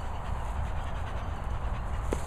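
A Staffie x Collie dog breathing hard close to the microphone, over a steady low rumble.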